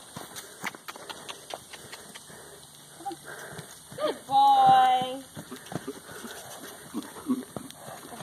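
Hoofbeats of a horse trotting and cantering loose over a dirt paddock, irregular dull strikes throughout. A short held voice-like call sounds at a steady pitch about four seconds in.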